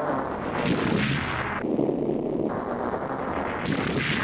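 Heavily distorted, noisy electronic music loop, repeating about every three seconds, with a sharp crackling burst at the start of each cycle.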